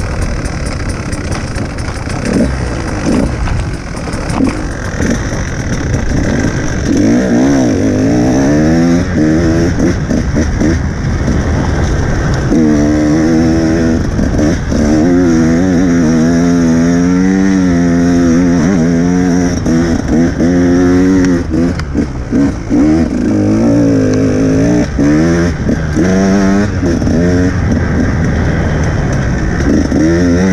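Off-road dirt bike engine being ridden hard, revs rising and falling constantly with the throttle and gear changes. The first few seconds are choppier, with the revs lower and broken up, before the engine pulls steadily higher.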